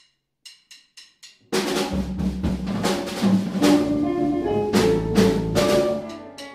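A count-in of sharp clicks, two spaced and then four quick, after which a Latin jazz quintet of drum kit, congas, electric bass, keyboard and guitar comes in together about a second and a half in. The band plays loud, with repeated drum-and-cymbal accents over bass and chords.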